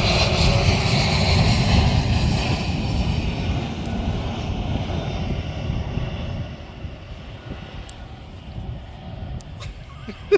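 Aircraft engine droning overhead, loudest at the start and fading away over the first six or seven seconds as it passes.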